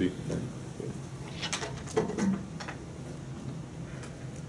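A few short, sharp clicks and knocks, bunched about a second and a half to two and a half seconds in, over a low room background.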